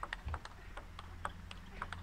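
Faint clicks of a table tennis ball struck by bats and bouncing on the table in a rally, several a second, over a low steady hum.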